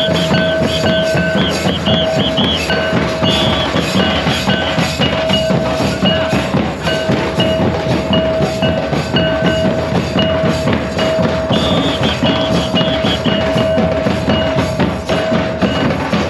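Folk drum ensemble: large double-headed barrel drums beaten with sticks in a fast, even rhythm, over a long held tone that breaks off now and then.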